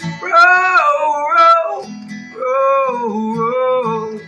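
A man singing two long, drawn-out vocal phrases without clear words over a strummed steel-string acoustic guitar.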